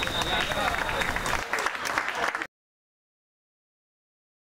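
Scattered clapping and voices from a small crowd of spectators at a football match, cutting off abruptly about two and a half seconds in.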